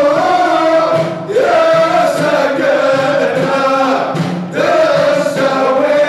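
Group of men chanting an Aissawa Sufi chant in unison, holding long lines with brief breaks for breath about a second in and again about four and a half seconds in.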